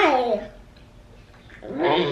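A toddler's voice: one short call that falls in pitch at the start, likely the word "car", then a pause, then voices again near the end.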